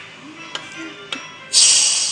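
Steam hissing loudly out of a pressure cooker's vent as the whistle weight is lifted, releasing the pressure; the hiss starts suddenly about one and a half seconds in, after a couple of light clicks.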